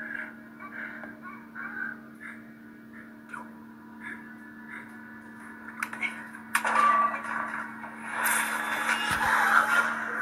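Film soundtrack of a violent fight scene playing through a laptop's small speakers, over a steady low hum. It is quiet with faint short sounds at first, then turns into loud, rough noise from about two-thirds of the way in, loudest near the end.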